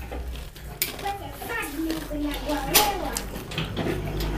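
Quiet voices talking briefly, too soft for the words to be made out, with two sharp clicks and a low steady hum underneath.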